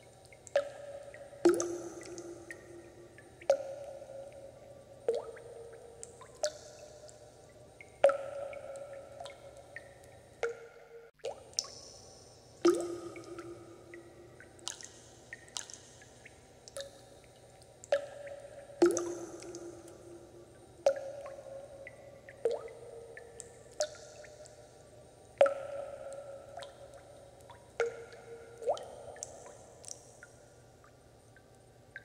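Water drops falling into water one at a time, each a sharp plink with a short ringing tone that fades, at irregular intervals of about one to two seconds.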